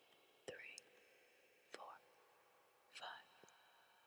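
A person whispering counted numbers, three short words about a second and a quarter apart.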